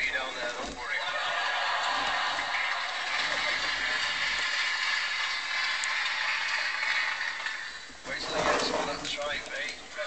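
A live audience laughing for several seconds, dying away about eight seconds in, followed by a man's voice near the end.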